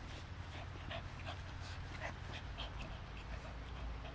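Blue Staffordshire bull terrier chewing on an old leather boot: irregular small clicks and squeaks of teeth working the leather, with the dog panting.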